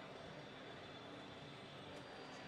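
Faint, steady ambience of a large gymnasium full of spectators: an even rumble of indistinct crowd murmur and hall noise, with no distinct events.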